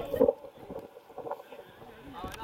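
A man's shout ends just at the start, then low wind noise on the microphone with a few faint ticks.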